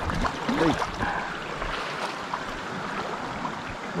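Shallow creek water running steadily over stones, with a few small splashes and knocks as a small hooked brown trout is brought into a landing net.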